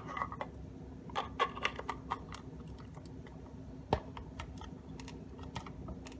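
Light, scattered clicks and taps of 3D-printed PLA plastic parts being handled and fitted together by hand, with one sharper click about four seconds in.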